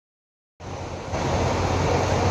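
Diesel coach engines idling: a steady low hum under a rushing noise. It cuts in about half a second in and grows louder a little after one second.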